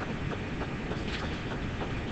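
Steady low rumble and hiss of room noise, with a few faint ticks.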